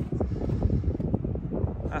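Wind buffeting the microphone outdoors, a continuous low rumble with irregular gusts.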